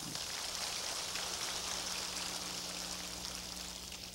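Large audience applauding, tapering off near the end.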